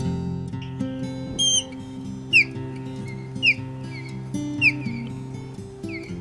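Acoustic guitar music, with an osprey's short whistled calls over it: a first call about a second and a half in, then three high whistles falling in pitch, about a second apart.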